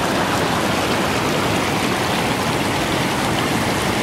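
Shallow mountain stream rushing steadily over rocks and stones.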